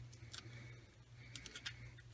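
Faint handling sounds: a few light ticks and soft rustles as a small paper card with a clear plastic pocket is pressed flat and turned over by hand, over a near-silent room.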